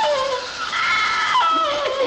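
Laughter: a voice giving a series of short, pitched laughs that glide up and down.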